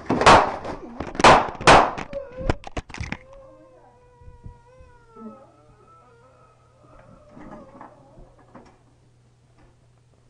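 Wooden apartment door being smashed through, a series of loud crashes in the first three seconds. Then a man's long, wavering screams.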